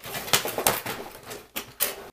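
Plastic toy trucks rattling and clacking as they are pushed and handled, a dense run of short knocks and clicks.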